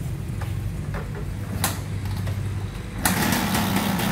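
Two-stroke engine of a Suzuki Satria motorcycle running at idle with a few light clicks, then becoming suddenly louder and harsher about three seconds in.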